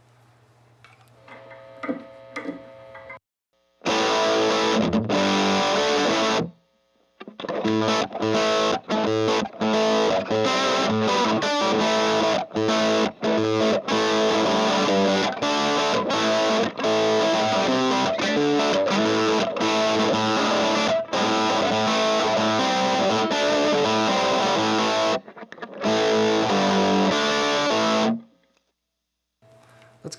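Electric guitar, a 2012 Gibson Les Paul Traditional, played through an Orange Getaway Driver overdrive pedal into an Orange Tiny Terror 15-watt tube combo set clean, with the pedal's knobs near noon and the gain up a little, giving an overdriven crunch. A few soft notes come first, then loud playing starts about four seconds in, pauses briefly twice, and stops a couple of seconds before the end.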